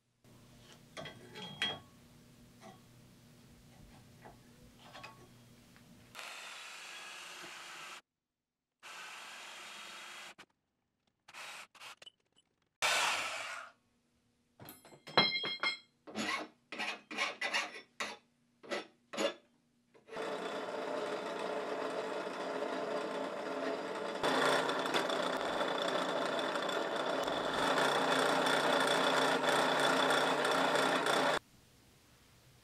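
Metalworking sounds in several short cuts: light metallic clicks of small steel parts being handled, then a quick run of hand strokes on a steel bar clamped in a bench vise. In the last third a drill press motor runs steadily, getting louder as the bit cuts into steel.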